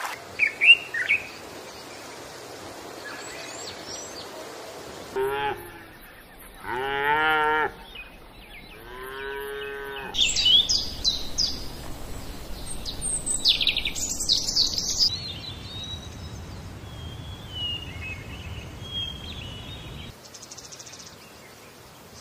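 A run of animal calls. It opens with a few sharp bird chirps, then three long cattle moos come between about five and ten seconds in. A burst of shrill, high calls follows, and faint bird chirping runs on until near the end.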